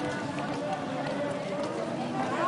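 Crowd of marchers, many voices talking and calling out at once, with no single voice standing out.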